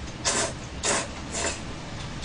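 A person slurping kalguksu noodles, three short slurps.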